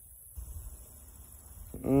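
Quiet background with only a faint low rumble, then a man's appreciative hummed 'mm-hmm' starting near the end.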